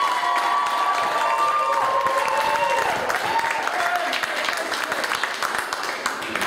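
Audience applauding, with a few voices calling out over the clapping; the applause eases slightly in the second half.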